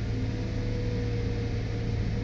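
Multihog CV multi-purpose sweeper running in sweep mode, heard from inside its cab: a steady low engine drone with a thin, steady whine above it and a hiss from the suction fan and brushes.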